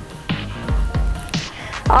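Background workout music with a steady beat, about two beats a second.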